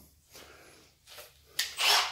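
Quiet handling noises of fingers rubbing over the freshly chamfered steel pin ends, a few faint scuffs and then a louder brushing rub near the end.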